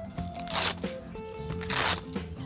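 Velcro straps on a pop-up canopy frame being ripped open twice, a short tearing rasp about half a second in and another near the end, over background music with steady held notes.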